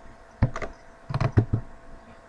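Light, sharp clicks of computer input at a desk: a single click about half a second in, then a quick run of four or so around the middle.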